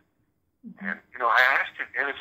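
Speech: a voice talking with a thin, phone-line quality, after a pause of about half a second at the start.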